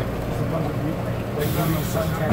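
Steady low hum of the ATL SkyTrain people-mover car, with passengers' voices in the background. About one and a half seconds in, a brief high hiss cuts in.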